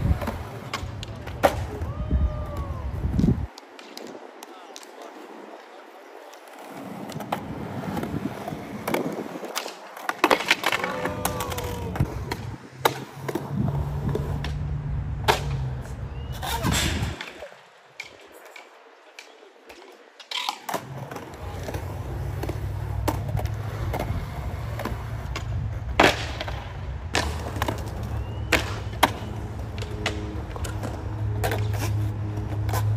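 Skateboard wheels rolling on hard ground, with sharp clacks of the board popping and landing scattered through, and two stretches of a few seconds where the rolling drops away.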